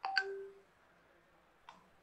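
A sharp click with a brief electronic beep made of short steady tones, gone within about half a second, then a fainter click near the end.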